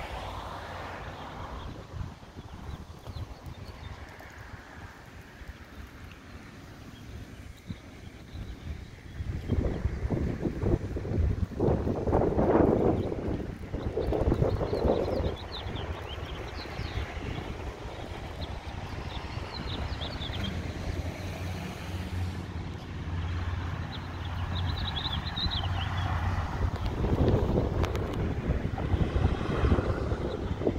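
Wind buffeting the microphone, with a low rumble throughout that grows louder and gustier for several seconds from about ten seconds in.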